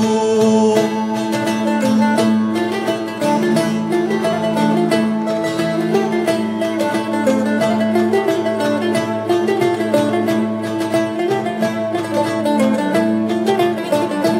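Cretan folk instrumental passage: a bowed Cretan lyra with plucked laouto and mandolin, played as fast, rhythmic picking over a steady held low note.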